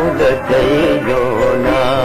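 Old Hindi film song playing: a wavering melody with vibrato over a steady low drone.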